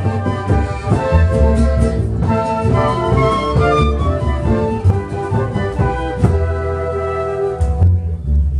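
A flute ensemble of several silver transverse flutes playing a tune together in held and moving notes, with a deep low part sounding underneath.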